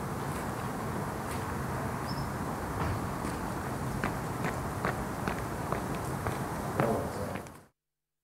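Footsteps on outdoor paving, a series of short steps about two a second, over a steady outdoor background hiss. The sound cuts off suddenly near the end.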